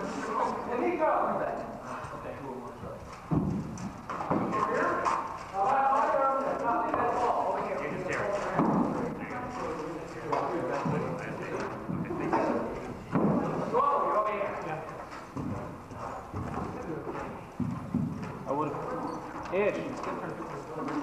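Scattered hollow knocks of rattan swords striking shields and armour during armoured sparring, over chatter from people in the room.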